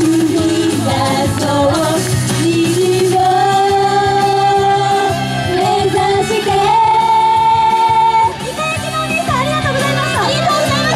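Japanese idol pop song performed live: girls' voices singing into microphones over a recorded backing track through PA speakers, with long held notes. The music drops a little in level just past eight seconds in.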